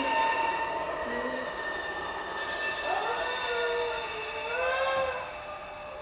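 A sustained drone of several held tones, like a chord. In the second half a high pitched line, voice-like, slides up and down above it.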